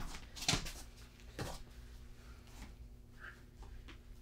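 Two short, soft knocks or rustles from two people moving on a foam wrestling mat, about half a second and a second and a half in, then quiet room tone.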